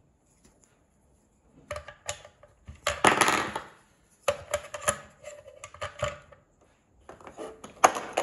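Hard plastic trimmer attachments and a plastic storage stand being handled, with clicks and knocks of plastic on plastic. A longer scraping rustle comes about three seconds in, then a run of small rattling clicks.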